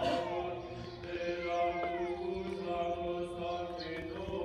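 Romanian Orthodox liturgical chant in the Byzantine style, sung outdoors during the Divine Liturgy: voices sing long drawn-out notes over a steady low held note.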